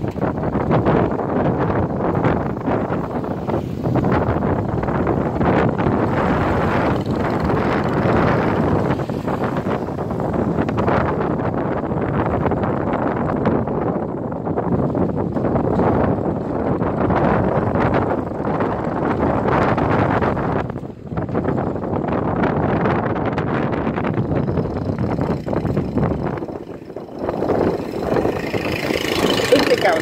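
Motorbikes and a car crossing the steel-plated deck of a suspension bridge, their engines and tyres on the steel plates making a continuous rumble with a crackly edge. Wind buffets the microphone.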